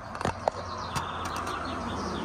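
Small birds chirping faintly over a steady outdoor hiss, with a few sharp clicks in the first second.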